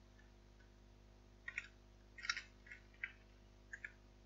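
Computer keyboard keystrokes: a quick run of faint clicks starting about a second and a half in, as a line of code is typed, over a faint steady hum.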